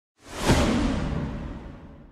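A trailer sound effect. A rushing whoosh swells to a hit about half a second in, then dies away over the next two seconds in a long rumbling tail.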